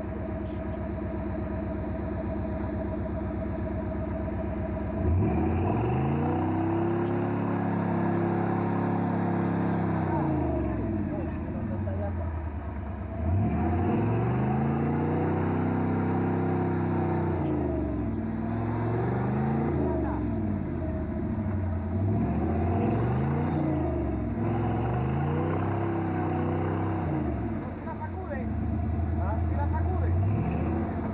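Off-road 4x4's engine running steadily, then revved hard again and again as the truck struggles stuck in deep mud. It gives two long revs that rise and fall, then a string of shorter ones near the end.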